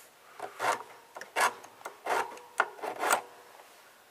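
A small metal part from a plug is scraped in about six short, rasping strokes that stop after about three seconds. This is a scratch check to see whether a coated piece is brass or steel.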